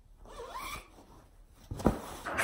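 Zipper on a fabric cushion cover being pulled closed over a stuffed pillow, followed by a short thump near the end.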